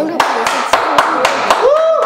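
A small group clapping, with one close pair of hands giving sharp claps about four a second, while voices talk over it; near the end a voice calls out a drawn-out note that rises and then holds.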